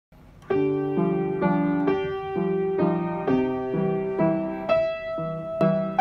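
Zimmermann piano playing a simple beginner's waltz with both hands: a melody over chords, the notes struck at a steady, even pace of a bit over two a second. The playing begins about half a second in.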